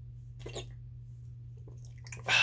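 A man swigging from a glass bottle: two short, faint gulping sounds, about half a second in and near the end, over a steady low hum.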